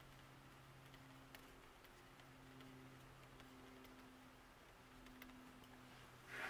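Near silence: room tone with a faint, steady low hum and a few faint ticks.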